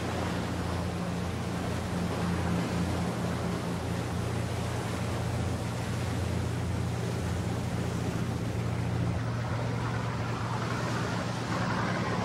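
Small motor launch's engine running steadily, with water rushing past the hull and wind noise.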